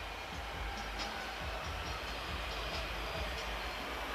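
Basketball arena ambience during live play: a steady, even background of low crowd noise and hall rumble, with a few faint short ticks.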